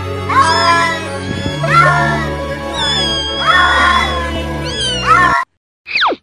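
A cat meowing in a series of drawn-out calls that rise and fall, over a steady musical drone. The calls stop suddenly about five and a half seconds in, and a short falling whistle follows near the end.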